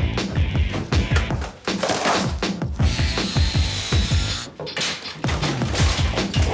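Background music with a steady beat over demolition work: wood knocking and cracking as cabinets and fixtures are torn out, with a stretch of tool noise in the middle.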